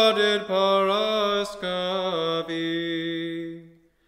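A man's voice chanting an Orthodox hymn in English, the melody stepping down through several drawn-out notes to a long held final note that fades away shortly before the end.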